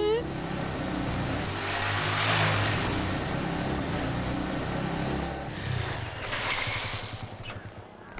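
Motorcycle engine running as it rides along a road; it grows louder about two seconds in and fades away near the end.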